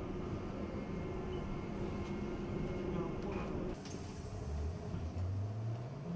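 Cabin noise inside a trolleybus: a steady low rumble and hum from the vehicle, dropping briefly about two thirds of the way through, with a low hum that rises slightly near the end.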